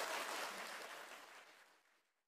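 Audience applause fading out to silence near the end.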